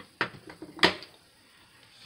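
Two short knocks of hand tools being handled and set down on a craft table, about two thirds of a second apart, the second louder.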